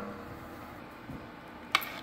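Quiet room tone with one short click near the end.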